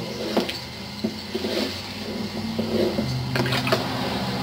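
Thick tomato sauce sloshing as a long wooden paddle stirs a large stockpot, with a few knocks of the paddle in the pot. A steady low hum runs underneath.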